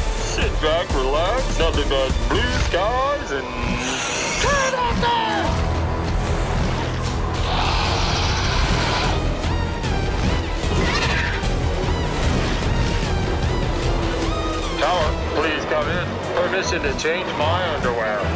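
Animated action soundtrack: music with sound effects. Wavering, sliding vocal cries come early and again near the end, and a noisy rushing burst falls near the middle.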